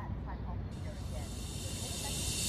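Faint chirping over a low outdoor rumble. Under a second in, a high hiss sets in and swells steadily, a noise riser building into music.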